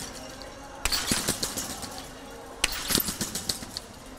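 Trampoline springs rattling and jingling as two synchronized trampolinists land on their beds. The bursts come about every second and three-quarters, two of them: one about a second in and one just before three seconds.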